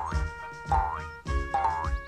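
Cartoon boing sound effects over light music: three springy boings, each a short rising swoop in pitch about two-thirds of a second apart, as a cartoon frog hops along.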